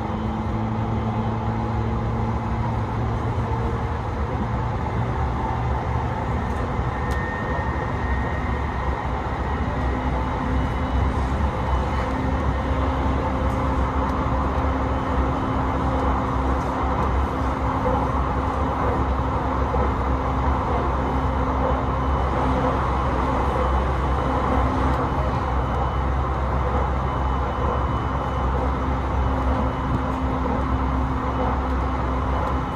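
Interior noise of a JR East E721-series electric train running: a steady low rumble of the wheels on the rails under a hum of steady low tones. About ten seconds in, the hum steps up a little in pitch.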